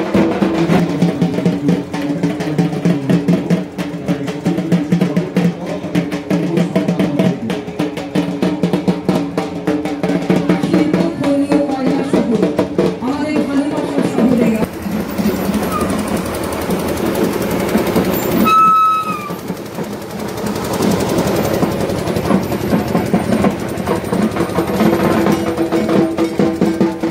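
Loud procession music with fast, dense drumming and voices mixed in. The drumming thins out about halfway through, and a brief high steady tone sounds about three-quarters of the way in.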